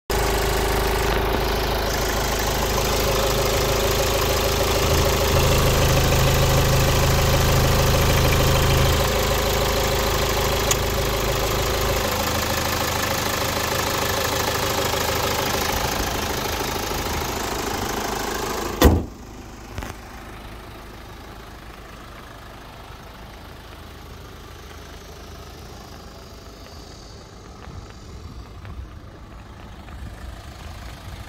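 Kia Sorento's CRDi common-rail diesel four-cylinder idling steadily, heard from over the open engine bay. A single sharp thump comes a little past the middle, after which the sound drops to a much quieter background.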